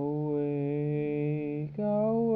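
Music: a long, chant-like note held by a voice over a steady low drone, sliding up slightly at its start; near the end it breaks off and a new held note begins.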